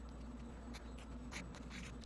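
Pen scratching across paper in short, quick strokes, several in a row, over a steady low hum.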